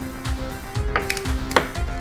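Instrumental background music with a steady beat. About a second in and again about half a second later come two sharp knocks, the second louder, as wooden blocks are set down on the jig board.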